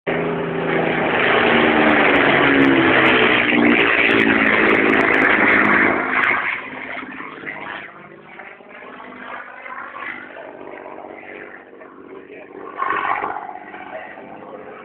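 Supermarine Spitfire's piston V12 engine in a low flypast: a loud, close pass in the first six seconds with the engine note falling in pitch as it goes by, then fading to a faint drone as the aircraft moves away.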